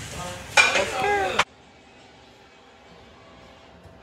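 A woman's voice for about a second and a half, cut off abruptly, then faint steady room hiss.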